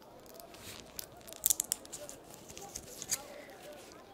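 A tablet being pressed out of a plastic blister pack by gloved fingers: a run of sharp crinkles and crackles of plastic and foil, the loudest about one and a half seconds in and another near three seconds.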